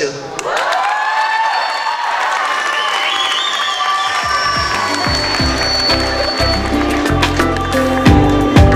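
Audience applauding and cheering. Music with a steady bass line comes in about five seconds in and grows louder.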